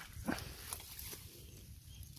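Faint rustling and handling noises as the camera moves through long grass, with one brief, louder sound about a third of a second in.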